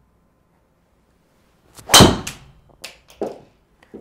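A driver's clubhead striking a golf ball at about 107 mph club speed: one sharp, loud crack about two seconds in with a short ringing tail, followed by two softer knocks about a second later.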